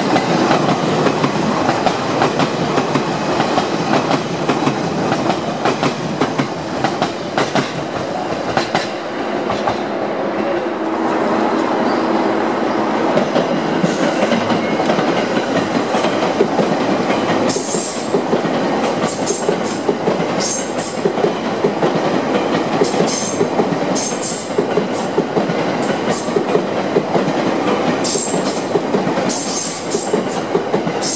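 Electric multiple-unit trains rolling past close by at low speed through station pointwork: first a JR East E259 series Narita Express set, then a Rinkai line TWR 70-000 series set. Steady wheel-on-rail rolling noise, with short sharp high-pitched clicks and squeaks from the wheels coming thick and fast from about halfway on.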